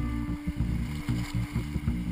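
Low, uneven rumble of rushing whitewater and wind buffeting a camera microphone held at water level on a raft in rapids, under one faint held note of background music.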